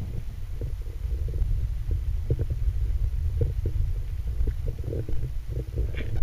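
Muffled low rumble of water movement and handling noise, picked up by a camera held underwater, with scattered soft knocks.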